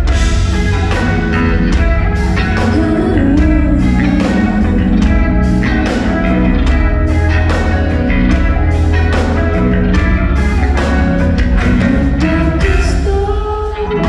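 Live band playing a pop-rock song on electric guitars, bass guitar and drum kit, with a regular drum beat and heavy bass. There is a short lull near the end before the band comes back in.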